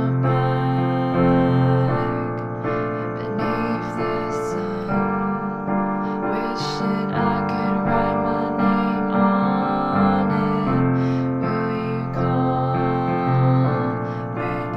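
Piano playing the chord accompaniment to a verse in F, moving through F, B-flat major 7 and G minor 7 chords with steady rhythmic restrikes. The left hand plays a bass line that follows the vocal melody.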